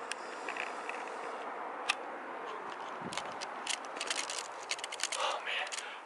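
Steady outdoor background hiss, with a single sharp click about two seconds in and a run of small clicks and rattles from about three seconds until near the end.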